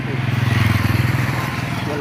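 A motorcycle engine passing by, swelling to its loudest about half a second in and fading away.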